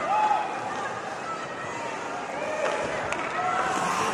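Ice hockey arena ambience during live play: a crowd murmuring, with scattered distant voices and shouts and faint scraping and clacking from the ice.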